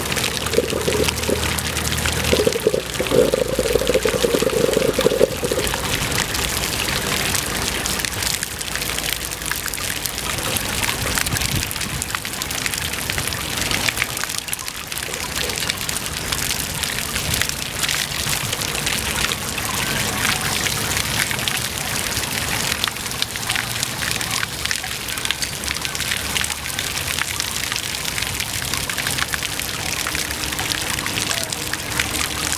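Water jets of a public fountain splashing and pattering onto wet paving and shallow pools, a steady spattering that is louder for a few seconds near the start.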